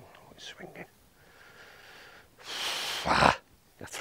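A man's short groan as his putt misses, then a loud, long exhale of frustration about two and a half seconds in.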